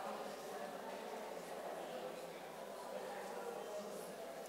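Many people talking at once in pairs: a steady hubbub of overlapping conversation, with no single voice standing out.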